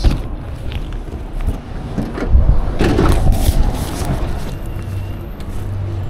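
Handling noise on a body-worn camera: cloth and cardboard rubbing and knocking against the microphone while walking, with a few louder knocks.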